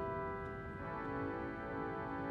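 Grace Cathedral's 1934 Aeolian-Skinner pipe organ playing softly: a held chord moves to a new, fuller chord a little under a second in, with a lower note repeating in short pulses beneath it.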